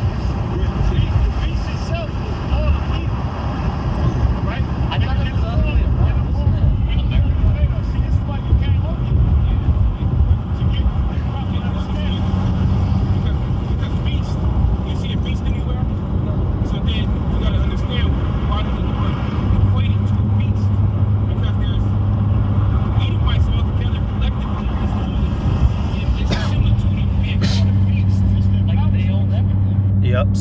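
Playback of an outdoor recording: men's voices, hard to make out, over a heavy, steady low rumble of the kind that traffic or wind makes. A steady low hum joins about two-thirds of the way in.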